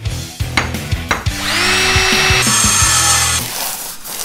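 Short intro jingle: music with tool sound effects. There are a few sharp knocks, then a power-drill whine that spins up and runs steadily for about two seconds before it stops.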